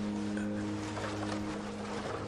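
A sled sliding fast over packed snow, a steady rushing scrape, under sustained music tones.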